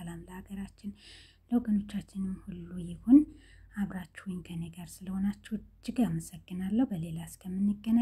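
Speech only: a person talking in Amharic, with short pauses between phrases.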